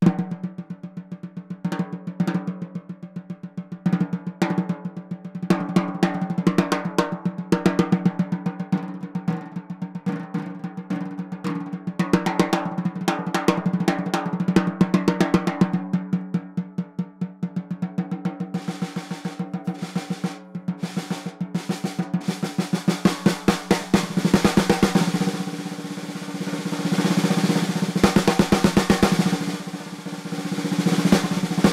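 Ludwig Acro aluminum-shell snare drum played with sticks: strokes and rolls with the snare wires off, the head ringing with a clear pitched tone. About eighteen seconds in the snare wires are switched on, and the strokes take on the bright rattle of the wires.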